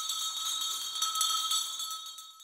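Small bells jingling in a high, steady shimmer, with one clear ringing tone beneath it, used as a short musical transition between narrated passages.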